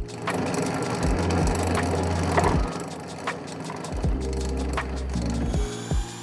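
Bench drill press boring into a workpiece: a rough grinding rasp from the bit cutting for about four seconds, then easing off. Background music with a steady beat plays throughout.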